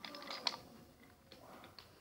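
Faint, scattered clicks and light knocks of wooden toy trains being handled on wooden track.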